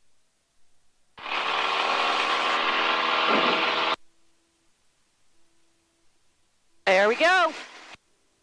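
A steady, buzzing tone for about three seconds that starts and cuts off sharply, followed near the end by a girl imitating a horse's whinny in a quickly wavering voice.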